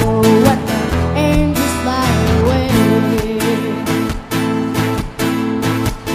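A young girl singing into a microphone, her voice gliding and wavering, over steadily strummed acoustic guitar chords.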